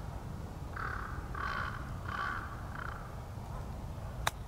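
A crow cawing four times in quick succession, harsh calls roughly two-thirds of a second apart.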